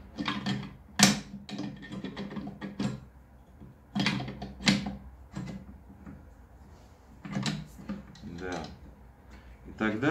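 Clicks and knocks of metal on metal as the flip stop on an INCRA miter gauge's aluminium fence is handled and slid into position, with sharp clicks about a second in and again around four and five seconds in.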